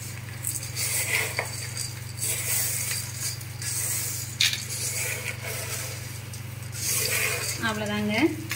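A hand tossing a dry poha snack mix of flattened rice flakes and peanuts around an aluminium pot: repeated dry rustling and rattling scoops against the metal, over a steady low hum. A voice comes in near the end.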